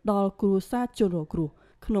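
Only speech: a person talking in Khmer, with a brief pause a little past halfway through.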